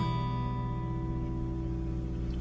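Acoustic guitar playing an E minor chord, the strings brushed gently with the thumb at the start and left ringing out, fading slowly.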